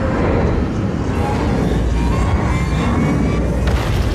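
Film soundtrack of a spacecraft scene in orbit: a steady deep rumble of the craft with musical score over it.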